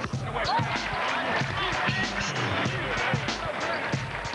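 Basketball game sound from a TV broadcast: arena crowd din with the ball bouncing on the hardwood, mixed with voices and music.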